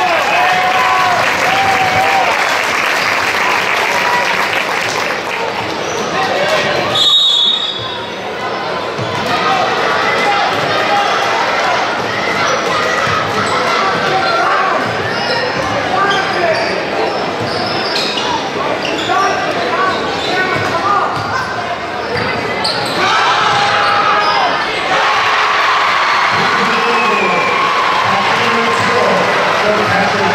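Basketball game in a gym: a basketball dribbling on the hardwood court under steady crowd chatter and shouts, echoing in the large hall.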